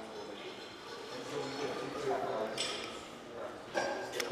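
Faint murmur of background voices in a large room, with no nearby voice or distinct event.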